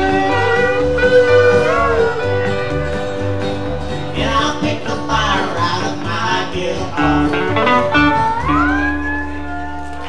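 Live rockabilly band playing an instrumental passage on upright bass, acoustic guitar, electric guitar and steel guitar, with steel guitar slides. Near the end a rising slide leads into a held closing chord.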